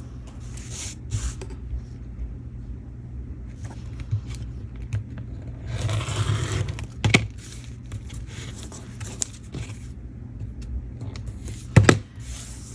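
Rotary cutter run along an acrylic ruler on a cutting mat, a scratchy cut about six seconds in, with sharp knocks as the ruler and cutter are handled and set down, one about a second after the cut and one near the end. A steady low hum runs underneath.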